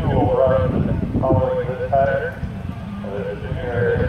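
People talking indistinctly in short phrases over a low rumble of wind on the microphone.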